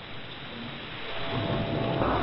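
Shortwave radio static: an even hiss with crackle, heard through the receiver's narrow audio filter. A faint steady whistle comes in about a second in.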